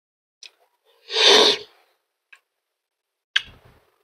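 Close-up mouth sounds of eating ripe mango: a loud wet slurp about a second in, with a few short lip smacks and clicks around it.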